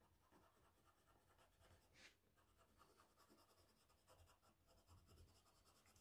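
Very faint scratching of an oil pastel on paper in short colouring strokes, with a few soft ticks, near silence otherwise.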